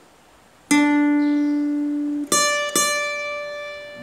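Acoustic guitar played slowly, one note at a time. A lower note is plucked and rings for about a second and a half, then a higher note on the high E string at the tenth fret is picked twice in quick succession and left to ring.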